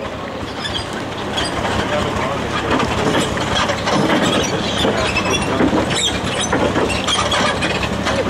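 Farm tractor engine running steadily as it tows a wagon along a dirt track, the wagon rattling and clattering over the bumps.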